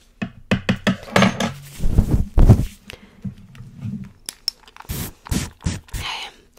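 Close-up ASMR handling sounds right at a fluffy-covered microphone: irregular taps, clicks and soft thumps from hands and small objects, loudest about two seconds in. Near the end comes a short hiss, in keeping with a spray bottle spritzing toward the mic.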